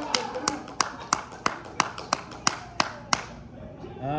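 One person clapping their hands in a steady rhythm, about three claps a second, about ten claps in all, stopping about three seconds in.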